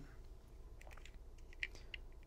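A few faint clicks and scrapes of a small flathead screwdriver twisting in a slot of a plastic door/window sensor case, prying its cover loose; the clearest clicks come near the end.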